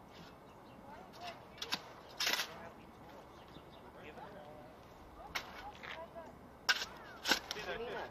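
A long-handled shovel digging a planting hole: the blade strikes and scrapes into soil and stones in a run of sharp, irregular hits, the loudest about two seconds in and twice near the end.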